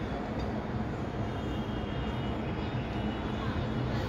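Steady low background rumble with a faint high hum above it, unchanging throughout.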